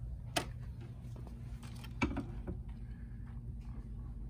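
Handling knocks of a tennis racket on a Prince swing-weight and balance machine's clear plastic cradle: two sharp clicks about 1.7 seconds apart with a few softer taps between them, over a low steady hum.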